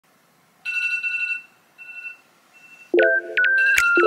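A phone alarm tone: a held electronic beep that sounds once and then twice more, each fainter. Background music with chords and short falling synth glides starts about three seconds in.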